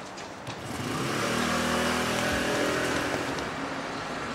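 A motor vehicle's engine driving past. It swells about a second in and eases off slightly near the end.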